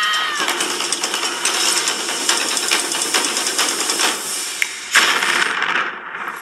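Fast mechanical rattling and clattering from the film trailer's soundtrack, with a brief high tone and then a loud sharp crash near the end.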